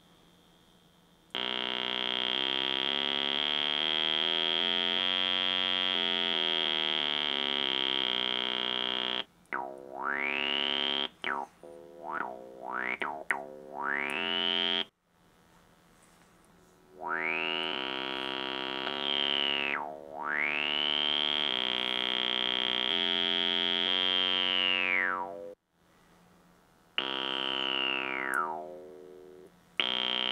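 Homemade Arduino-driven cigar-box synthesizer, a single buzzy voice played on its touch-strip keyboard through its small built-in speaker. It first holds a continuous tone stepping up and then back down through scale notes, then plays a series of separate notes, each brightening as its bandpass filter sweeps open and darkening as it closes.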